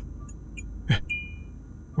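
Low steady electrical hum of a flickering light bulb, with faint scattered crackling clicks, a short stroke about a second in and a brief high ring just after it.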